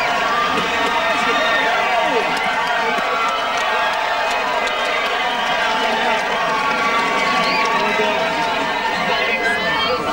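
A dense crowd of voices calling out and shouting over one another, steady throughout.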